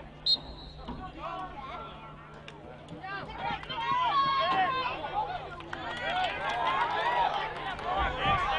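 A short, sharp whistle blast about a quarter second in, typical of a referee stopping play, followed by distant overlapping shouts and chatter of players and spectators.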